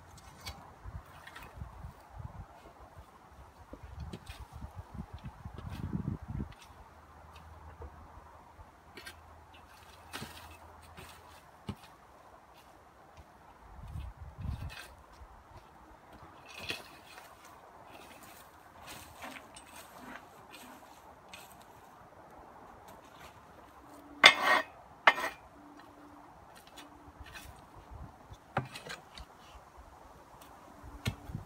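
Hand work on a garden path: scattered scrapes and clicks of a rake dragging bark chippings over soil and paving slabs between timber edging boards, with two sharp knocks close together about three-quarters of the way through.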